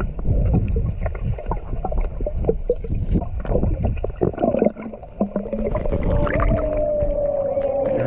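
Underwater pool sound picked up by a submerged action camera as a swimmer moves: muffled rushing water with many small bubble clicks. From about six seconds in, a held tone slowly falls in pitch.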